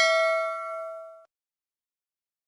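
Notification-bell sound effect: a bright metallic ding with several clear ringing tones that fades and dies out a little over a second in.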